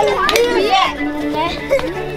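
A group of children shouting and calling out excitedly as they play, their high voices overlapping.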